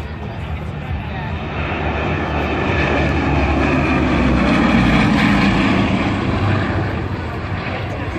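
Bristol Blenheim's two Bristol Mercury nine-cylinder radial engines droning in a low flypast, growing louder to a peak about five seconds in, then fading as the aircraft passes.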